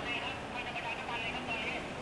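Indistinct voices, thin and hard to make out, over a steady hum of street traffic.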